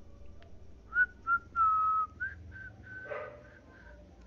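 Whistling: a short run of clear notes, starting about a second in, with one longer held note in the middle.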